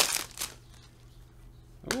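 The foil wrapper of a Panini Select basketball card pack is torn open and crinkled, loudest in the first half second. Quieter handling of the pack follows.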